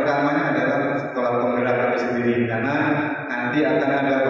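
A man's voice amplified through a microphone and PA loudspeakers in a reverberant hall, speaking in long, drawn-out syllables with no pauses.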